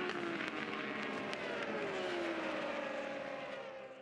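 Racing superbike engines running at the circuit, one engine note sliding slowly down in pitch through the middle, fading away near the end.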